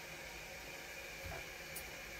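Faint steady hiss of water from a Kohler Cimarron toilet's fill valve refilling the tank after a flush.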